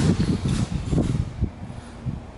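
Low rumble and dull thumps of walking and handheld-camera handling noise, the thumps about half a second apart and fading about a second and a half in.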